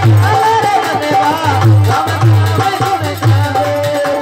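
Devotional bhajan performed live: a male voice sings a wavering melody over steady harmonium chords, with a dholak keeping a repeating low beat.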